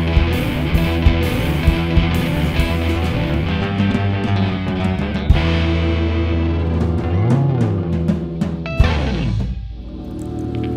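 A rock band plays: electric guitar and bass guitar over a drum kit. The drums drop out after the first couple of seconds, leaving held guitar and bass notes, with a note bent up and back down around seven seconds in and a long downward slide near the end as the sound fades.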